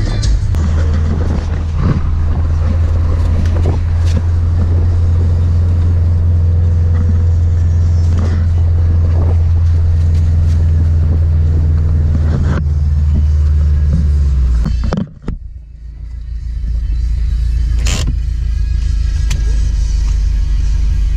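Steady low road and engine rumble inside a moving car's cabin, with occasional knocks and music over it. The sound drops away suddenly for about a second three-quarters of the way through, then the rumble builds back.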